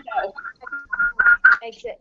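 Indistinct speech over a video-call line, broken into short fragments.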